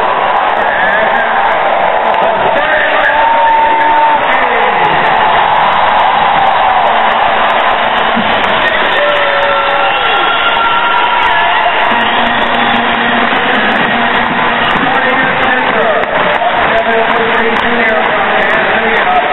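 A large arena crowd cheering and yelling, loud and steady, with single voices whooping and shouting above the mass of noise.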